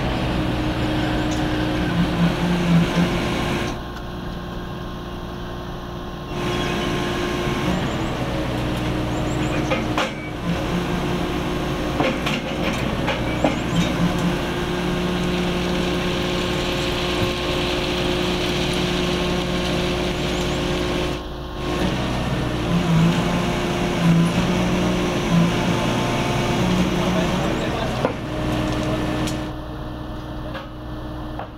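Engine of a DESEC TL 70 track-laying machine running steadily, with scattered metallic knocks. The sound breaks off and changes abruptly several times.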